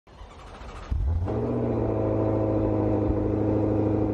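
Intro sound effect: a low rumble that swells about a second in into a steady, deep droning note that holds without changing.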